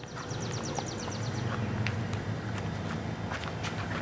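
A bird's rapid trill of short, high chirps in the first second, then scattered light taps of footsteps, over a low steady hum.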